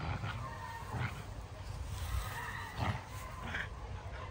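Two dogs growling and snarling as they play-fight, with a few short sharp vocal bursts.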